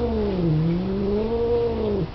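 Domestic cat giving one long, low angry yowl that sinks in pitch, rises slightly, then stops: a threat call at an unwelcome visitor outside.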